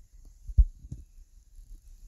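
A few short, low thumps, the loudest one just over half a second in.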